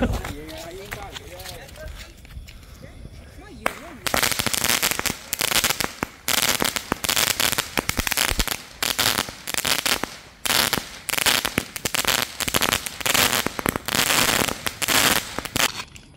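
A multi-shot firework cake sitting on the ground goes off about four seconds in. It fires a fast run of crackling shots in bursts, with short pauses between them.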